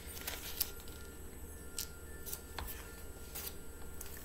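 Pages of a picture book being handled and turned: a few soft, brief paper rustles and clicks over a low steady hum.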